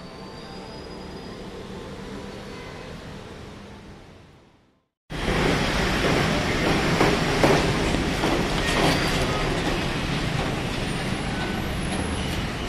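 Quiet background music fading out over the first four seconds, a brief silence, then an abrupt cut to loud, steady outdoor noise: a dense rumbling hiss with a few faint knocks, of the kind made by traffic or wind on the microphone.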